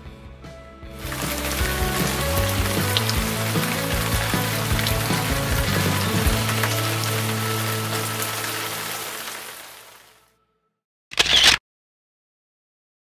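Rushing water of a cascading waterfall, with background music under it, fading out about ten seconds in; a brief camera-shutter click follows about a second later.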